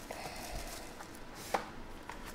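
Foil trading card packs and cards being handled on a table: a soft papery rustle, then a light tap about a second in and a sharper tap about half a second later.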